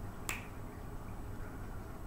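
A single sharp click about a third of a second in, over faint steady room hum.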